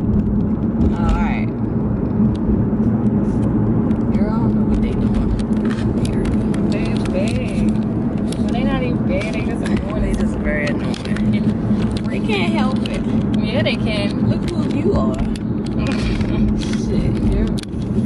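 Car cabin noise: a steady hum of engine and road under way, with a person's voice talking on and off over it.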